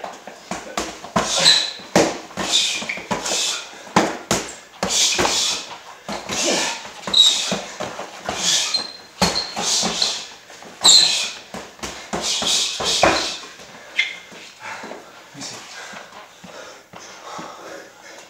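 Two boxers sparring: gloves smacking on gloves and bodies in quick irregular strikes, with sharp hissing breaths. The exchanges thin out over the last few seconds.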